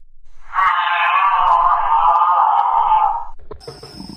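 One long, slightly wavering moaning call, held for nearly three seconds and then cut off.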